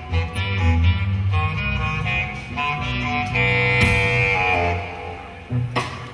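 Jazz-fusion band playing live: a melodic line over a bass line, with one long held note around the middle, the music thinning toward the end.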